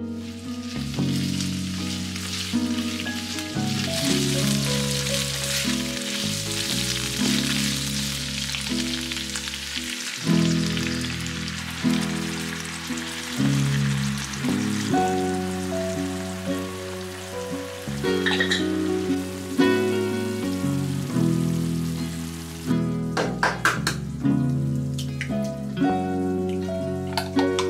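Chicken and sliced onion sizzling in a frying pan, the hiss strongest in the first half, under steady background music. A quick run of clicks comes near the end.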